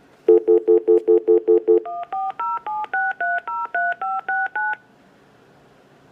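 Panasonic cordless phone on speakerphone calling back a number from caller ID. A quick stutter of about eight low two-note beeps, like a stuttered dial tone, is followed by eleven touch-tone (DTMF) digits that match the number 1-407-630-3569.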